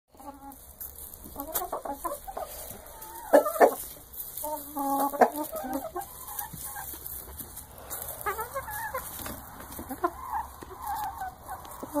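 Several chickens clucking, short calls coming in clusters throughout, with two louder calls about three and a half seconds in.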